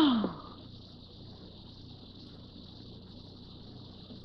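A woman's short breathy sigh at the start, falling in pitch, then a faint steady high chirring of crickets in the background.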